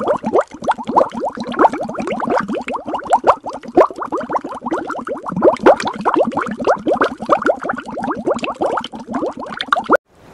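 Underwater bubbling sound effect: a dense, unbroken stream of bubble blips, each a quick upward-sliding pitch.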